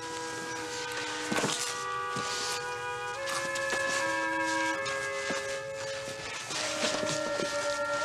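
Background dramatic score: held chords that shift to new notes every second or so, with a few brief sharp accents.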